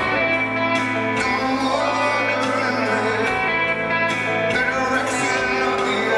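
Live rock band performing: electric guitar and a male lead voice singing into a microphone, over the arena sound system.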